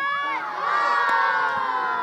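A group of children shouting and cheering together. Their many voices overlap, swell into a long held yell about half a second in, and fade near the end.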